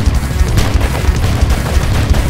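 Loud action-trailer score with heavy low percussion, overlaid with a rapid run of sharp hits and impacts.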